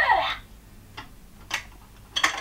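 Two light clicks of hard plastic, about half a second apart, as the small toy hamster figure and the plastic playset are handled.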